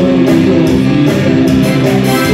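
Live band playing an instrumental stretch with no singing: guitars lead over bass, drums and keyboard, all amplified.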